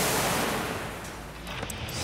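A heavy welded sheet-steel waste bin crashing over onto its side on a rubber mat: a loud metal crash that dies away over about a second and a half. The impact knocks the bin's lock clean off.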